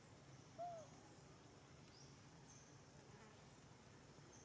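Near silence: faint outdoor ambience, with one short call that rises and falls just over half a second in and a few faint high chirps.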